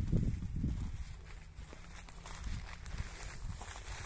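Footsteps crunching through dry stubble, over a low rumble of wind buffeting the microphone that is strongest in the first second.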